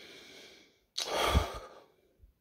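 A woman breathing in softly, then about a second in letting out a louder sigh.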